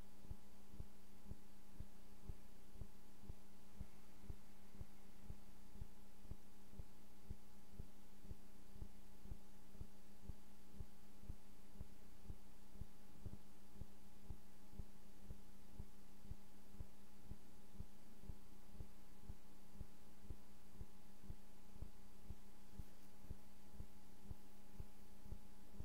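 A steady low electrical hum with soft, regular low thuds about twice a second, without a break.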